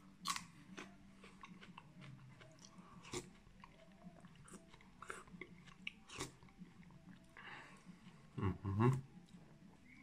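Close-up eating sounds: crisp crunching and chewing of a bitten raw green onion stalk, with spoonfuls of bean soup taken between bites. A brief voiced sound a little before the end.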